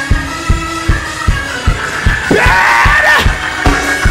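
Live church band music with a steady kick-drum beat of about two and a half beats a second under sustained chords. About two seconds in, a man's voice calls out over it through a microphone for about a second.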